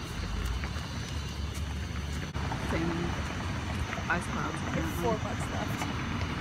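A low steady rumble for the first couple of seconds, then faint voices of people talking in the background.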